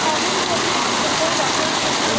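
Heavy rain pouring down, with floodwater rushing along the street, as one steady loud hiss. Faint voices call out over it now and then.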